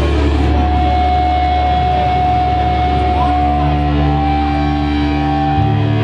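Heavy metal band playing live, electric guitars and bass holding long sustained notes, with a change to new notes about three seconds in.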